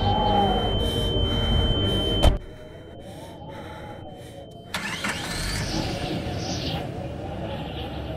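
A car door thuds shut about two seconds in, cutting off the louder outside sound. Just past halfway, the MG Gloster SUV's engine starts and keeps running.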